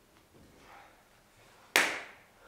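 A single sudden, loud sharp sound, like a clap or strike, near the end, fading out over a fraction of a second against an otherwise quiet stage.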